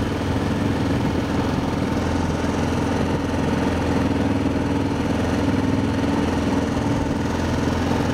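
Motorcycle engine running steadily, heard from on board the bike, its pitch and loudness holding even throughout.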